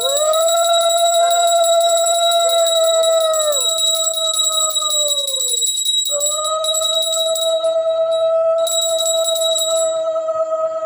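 A conch shell (shankh) blown in long held notes, each dropping in pitch as the breath runs out, with a short break about six seconds in before a new long note. A small brass hand bell rings rapidly throughout, the usual accompaniment to an aarti.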